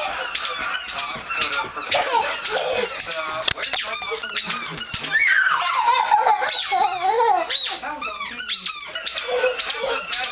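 Squeaky toddler shoes squeaking with every running step, a rapid run of high squeaks, several a second. A young child's voice rises and falls near the middle.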